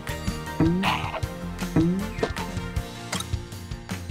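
Cartoon soundtrack: light background music with two short rising sound effects, one about half a second in and another near two seconds, and scattered light clicks.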